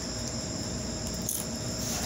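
Steady high-pitched insect trilling that does not break, with two brief faint noises in the second half.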